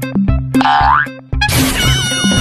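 Comedy sound effects laid over a bass-heavy music track with a steady beat. About half a second in there is a quick rising whistle-like glide. About a second and a half in comes a sudden crash, followed by several ringing tones that slowly sink in pitch.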